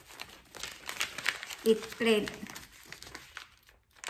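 A large sheet of pattern-drafting paper rustling and crinkling under the hands as it is pressed and shifted, a quick run of short crackles.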